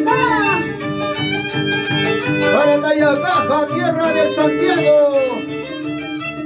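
Andean violin and harp playing a lively shacatan tune. The violin slides between notes over a steady plucked harp beat, and a woman's voice sings or calls in over the top.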